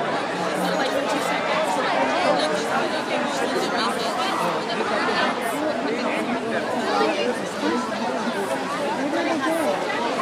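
A large outdoor crowd chattering, with many voices talking over one another at a steady level and no single voice standing out.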